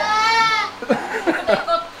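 A goat bleats once, a single call of under a second at the start, followed by people talking.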